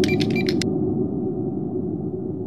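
Logo-intro sound effect: a steady low drone with a held hum-like tone, overlaid by a quick cluster of glitchy crackles in the first half second.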